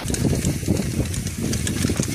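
Mountain bike riding over a rough dirt trail: a steady low rumble of tyres and wind with many quick rattling clicks from the bike.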